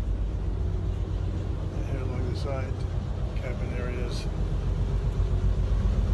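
A houseboat's engine running with a steady low rumble, and faint voices in the background around the middle.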